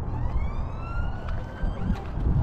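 A siren sounding one rising wail that levels off and fades after about a second and a half, over a steady low rumble.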